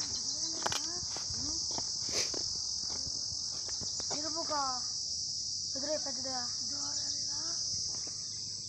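Steady, high-pitched chorus of crickets or similar insects shrilling without a break. A few short pitched calls rise above it in the second half, along with a few faint clicks.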